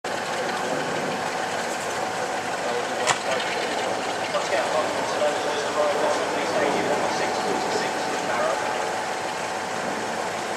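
Class 47 diesel locomotive's Sulzer engine running steadily while the train stands, with a faint steady whine over the engine noise and one sharp click about three seconds in; voices in the background.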